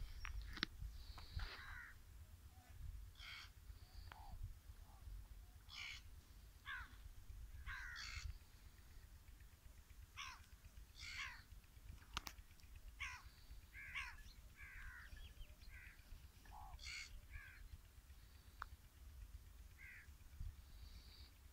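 Crows cawing repeatedly in short, falling calls, one every second or so, over a steady low rumble.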